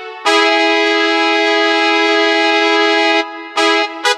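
Electronic arranger keyboard playing a brass-like chord held for about three seconds, then a shorter chord just before the end.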